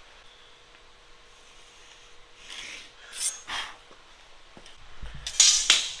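Soapstone scraping in a few short strokes across a steel plate, marking layout lines. Several loud sharp knocks follow near the end.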